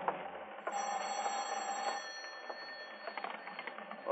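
Orchestral music bridge dying away at the start, leaving the low hiss of an old radio transcription recording with a sharp click and a few fainter scattered clicks.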